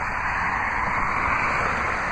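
Steady outdoor background noise: an even rushing hiss with no distinct pitch and no separate events.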